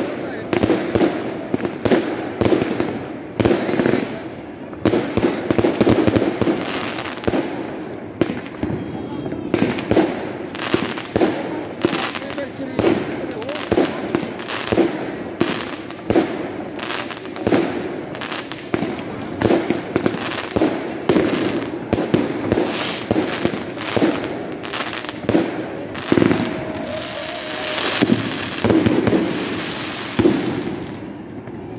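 New Year's aerial fireworks display going off in a dense barrage: irregular bangs and crackling explosions, several a second, without a break.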